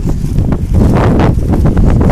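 Wind buffeting the microphone: a loud, gusting low rumble with a few short knocks.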